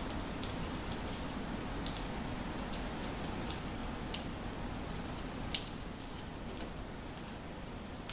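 Low steady room noise with a few scattered sharp little clicks and crinkles from a child handling and sucking a freeze pop in its plastic sleeve.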